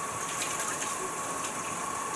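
Kitchen faucet running steadily into a stainless steel sink while hands are rinsed and rubbed under the stream.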